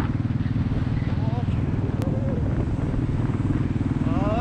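Royal Enfield motorcycle's single-cylinder engine running steadily while riding along the road, its exhaust a fast, even beat of firing pulses.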